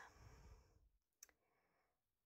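Near silence, with a faint hiss at the start and a single faint click a little after a second in.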